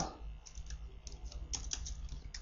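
Computer keyboard keys being typed: a few faint keystroke clicks in two short runs.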